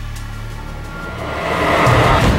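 Intro music for a TV ident, its steady low tones giving way to a noisy whoosh that swells louder through the second half.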